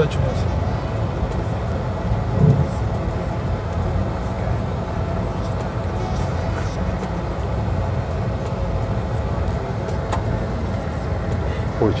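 Airliner flight simulator's cockpit sound: a steady low rumble of jet engine and airflow noise with a faint hum.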